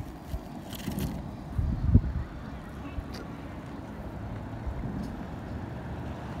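Low, uneven outdoor rumble with a few soft knocks and clicks about one, two and three seconds in, from a wooden chip fork being worked in a tray of chips and the camera being handled.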